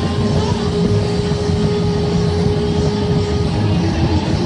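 Live rock band playing a dense droning passage, with one long held note over a heavy low rumble; the held note stops about three and a half seconds in.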